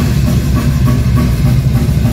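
Death metal band playing live and loud: fast, dense drumming on a drum kit under heavily distorted bass and guitar, with no vocals in this instrumental passage.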